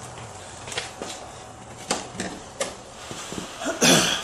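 A few scattered light clicks and knocks as hands handle a tilted walk-behind lawnmower, with a louder short noise just before the end.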